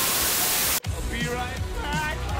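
A burst of television static hiss that cuts off suddenly under a second in, followed by music with a steady bass beat and a voice mixed over it.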